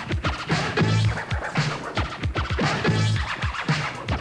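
Hip-hop music with turntable scratching over a steady beat of deep, falling kick drums.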